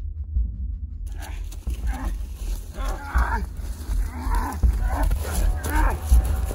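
Several drawn-out growling vocal calls, a person voicing a feral monster, starting about a second in and coming one after another over a steady deep rumble.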